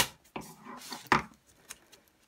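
Sharp metallic clicks as scissors pry back the metal retaining tabs on the back of a picture frame, two loud clicks about a second apart, with softer scraping of the cardboard backing between.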